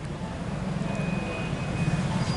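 Bus engine idling: a steady low rumble that grows slightly louder.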